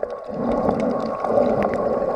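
Muffled underwater sound from a submerged camera: a steady dull rush of water with scattered sharp clicks.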